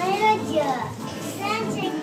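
Several people talking at once, women's and children's voices overlapping in a crowded room.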